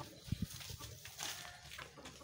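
A young donkey moving about on dry dirt: two soft low thumps about a third of a second in, then a brief rustle a little past the middle.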